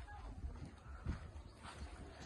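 Faint low rumble of wind on the microphone outdoors, with a few soft scattered knocks.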